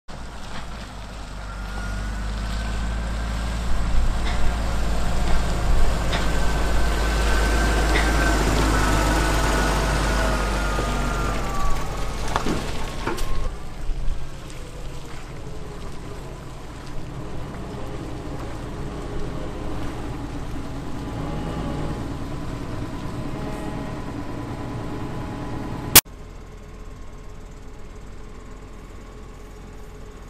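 Tractor engine approaching and passing close by: it grows louder to a peak, with a whine that falls in pitch as it goes past, then runs more quietly further off. A single sharp click near the end, after which the sound drops to a lower hum.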